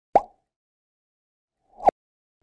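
Two short pitched plop sound effects on an animated logo transition, about 1.7 seconds apart: the first starts sharply and dies away, the second swells up and cuts off abruptly, like the first played in reverse.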